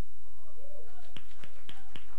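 Finger snapping from the audience: a string of sharp, irregular snaps starting about a second in, a few each second.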